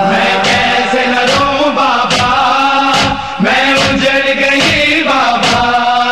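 Male voice chanting an Urdu noha, a Shia lament, in long held notes that bend in pitch, over regular short beats.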